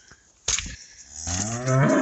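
A sharp click about half a second in, then a Hereford cow mooing: one call rising in pitch through the second half.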